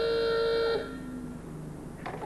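A car horn sounding one long, steady note that cuts off about a second in, leaving a quieter low hum.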